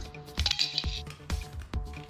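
Scissors snipping through the thin metal wall of a drink can, a string of short sharp metallic clicks, over steady background music.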